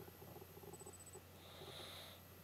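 Near silence: faint room tone with a low steady hum and a brief faint hiss near the end.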